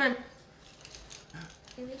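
A voice says "one" in a countdown, then a fairly quiet stretch with faint clinks of a metal fork and knife being worked on a plate.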